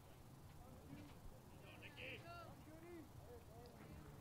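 Near silence: faint distant voices in short snatches over a low steady hum of ballpark ambience.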